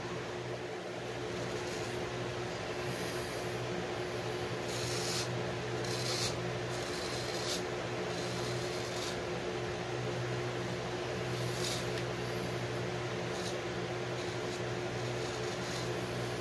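A 7/8 straight razor scraping through lathered stubble in a run of short rasping strokes, the blade cutting cleanly. A steady low hum runs underneath.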